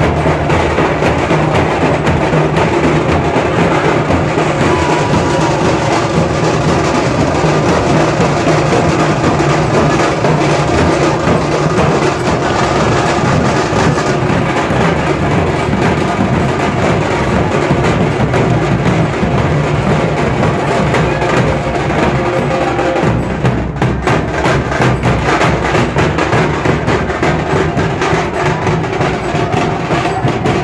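Several large double-headed dhol drums beaten together with sticks in a loud, continuous rhythm.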